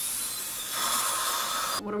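Dental instruments hissing in a patient's mouth: a steady rush of air and water spray with suction at a tooth being prepared for a filling. It cuts off suddenly near the end.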